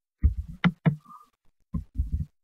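Computer keyboard keystrokes and mouse clicks picked up close by a desk microphone: a few separate dull thumps, some with a sharp click on top.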